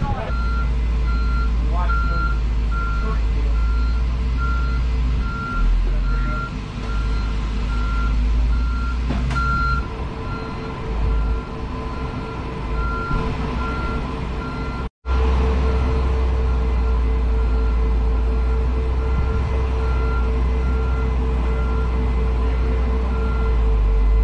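A truck's reversing alarm beeping in a steady series while the truck backs into an aircraft cargo hold, over a loud, constant low rumble. The audio drops out for an instant about halfway through, then the beeping and rumble carry on.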